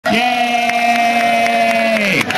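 A performer's voice through a handheld microphone, holding one long steady note for about two seconds and dropping in pitch at the end as it runs into speech.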